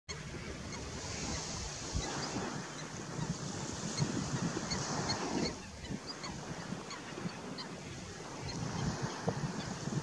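Flock of greater flamingos gabbling and honking, under steady wind noise on the microphone, with short high chirps scattered throughout.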